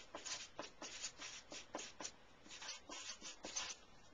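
Felt-tip marker writing on paper: faint, short scratching strokes, about three to four a second.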